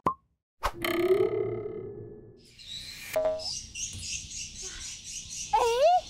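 Cartoon-style sound effects for an animated show logo. A sharp hit starts a ringing tone that fades over about two seconds, with a short pop about three seconds in and a high hissing shimmer after it. Near the end comes a wobbling, rising voice-like glide.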